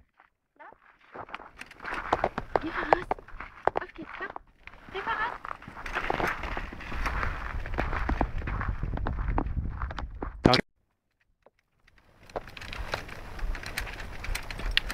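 Footsteps on snow, heard as a run of short clicks over a low rumble on the microphone, with brief murmured voices. A sharp click about ten and a half seconds in cuts the sound off for over a second before the footsteps resume.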